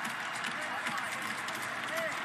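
Hockey arena crowd noise: a steady din of many voices, with scattered sharp clicks running through it.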